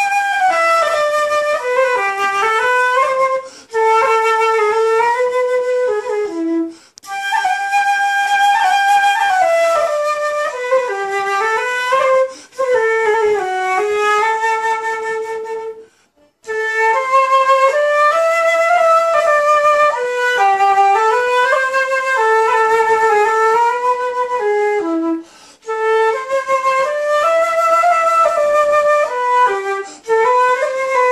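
Solo concert flute (silver transverse flute) playing a simple, popular melody in the middle register, phrase after phrase, with brief breaks for breath between phrases and the same phrase returning several times.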